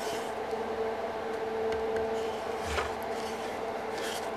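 Steady background hum with a fixed tone, and faint knocks and clicks as a small screwed-together wooden frame is turned over in the hands, the clearest a little under three seconds in.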